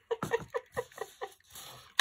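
A woman laughing: a quick run of short 'ha' pulses lasting just over a second, then a faint rustle near the end.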